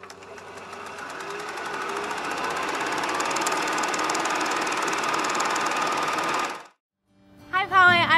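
A fast, even rattle of many strikes a second that builds up over the first couple of seconds, holds steady, and cuts off abruptly about a second before the end.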